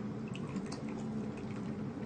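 Faint drips of water from a LifeStraw straw filter, a few small ticks over a low steady hum.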